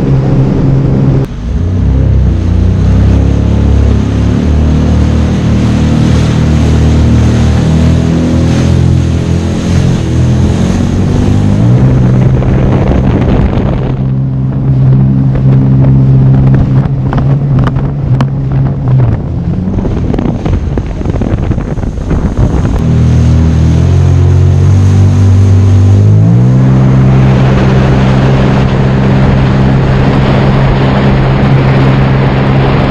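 Sea-Doo personal watercraft running at speed, its engine note over the rush of spray, with wind on the microphone. The engine pitch falls and climbs again several times as the throttle changes: a dip about a second in, a rise near the middle, a drop about two-thirds through and a climb back near the end.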